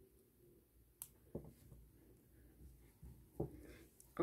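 Near silence broken by one sharp snip about a second in: small cutting pliers clipping off the excess nylon beading line. A few soft handling bumps follow.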